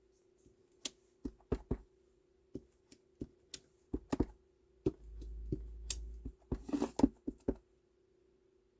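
Clear acrylic stamp blocks and a plastic ink pad knocking and clicking on a craft desk as a stamp is tapped onto the pad to ink it: a dozen or so sharp separate taps in small clusters, with a low rumble of handling about five seconds in.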